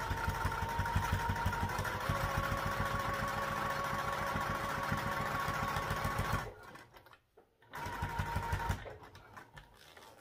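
Electric sewing machine stitching at a steady speed for about six and a half seconds, then stopping. After a gap of about a second, while the fabric is shifted with the needle down, it sews a second short run of stitches and stops again.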